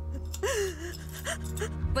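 A woman sobbing, with a gasping, wavering cry about half a second in, over a sustained background music score with a low drone.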